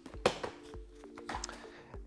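A single sharp click about a quarter second in, from the frame of an UPPAbaby Ridge jogging stroller being unfolded and set upright, over soft background music.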